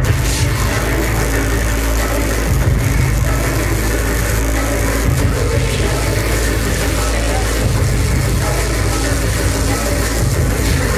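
Loud live industrial electronic music: a heavy, droning bass under a harsh wall of distorted noise that comes in right at the start and holds steady, heard through a camera microphone in the audience.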